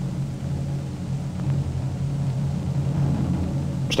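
A steady low hum and rumble with nothing else above it.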